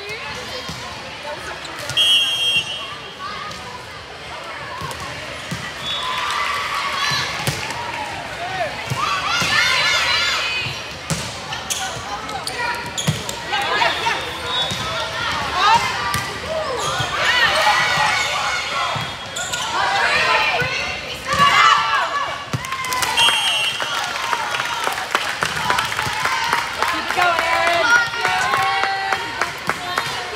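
Voices of players and spectators calling out in a large indoor sports hall, with the sharp smacks of a volleyball being hit during a rally.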